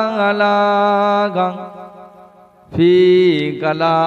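A man's voice chanting into a microphone in long, drawn-out melodic phrases, the sung style of a waz preacher. He holds a note for over a second, trails off, and comes back in on another held note near three seconds in.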